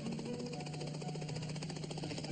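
Helicopter taking off: the fast, steady beating of the rotor blades over a low engine hum, with faint music underneath.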